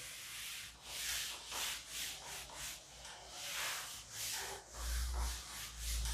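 A duster wiping chalk off a blackboard: quick, hissing back-and-forth strokes, about two to three a second. A low rumble joins in near the end.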